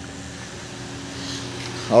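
Steady fan-like hiss with a faint low hum: a hybrid car running with its cooling fans on.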